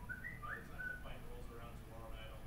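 Sound of a TV segment played through classroom speakers: a few short whistle-like tones in the first second, some gliding up, then a voice speaking.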